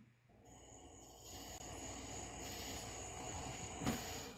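Faint steady background noise with a thin, high-pitched steady tone over it, and a brief click just before the end.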